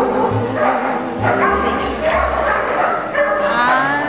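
Dog barking in short barks over loud background music.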